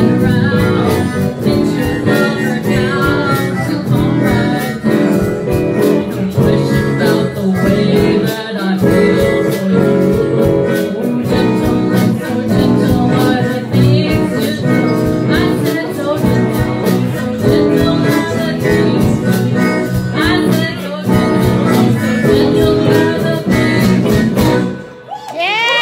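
Live blues band playing a steady groove on electric guitars and drums, with a harmonica.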